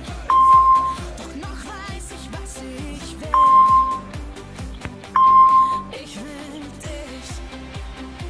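Pop music with a steady beat, over which a quiz app's short steady beep sounds three times, about a second in, a little past three seconds and a little past five seconds: the app's tone for a correct answer.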